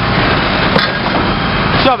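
Rear-loading refuse truck running loud and steady, its engine and packer hydraulics working as a wooden pallet is loaded into the hopper. There is a short knock about three-quarters of a second in.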